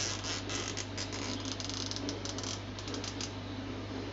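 Nylon cable tie being pulled tight around a plant's rhizome: runs of quick ratcheting clicks, dense for the first two and a half seconds, then a few scattered clicks. A faint steady low hum lies underneath.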